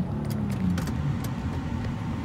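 Car cabin sound while driving on a gravel road: a steady low rumble of engine and tyres on gravel, with scattered light clicks.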